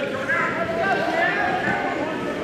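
Several raised voices calling out at once across a gym, with no clear words.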